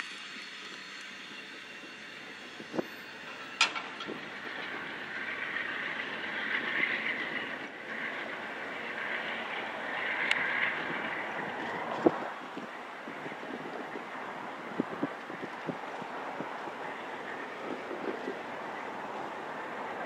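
Amtrak passenger train rolling away along the track: a steady rumble of wheels on rail that swells slightly a couple of times, with a few isolated sharp clicks.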